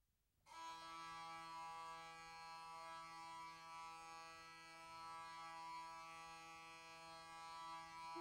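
A sustained instrumental drone on one steady pitch, rich in overtones, entering about half a second in after silence. It sounds as the bed for a medieval chant.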